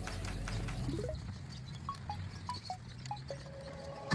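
Background music: an upward slide about a second in, then a string of short chime-like notes and a held note near the end.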